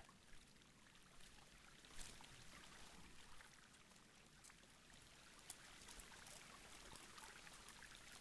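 Near silence: a faint steady hiss with a couple of faint ticks.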